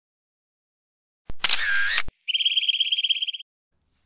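Camera sound effects: about a second in, a sound just under a second long that starts and ends with a sharp click, then a rapid run of high clicks lasting about a second.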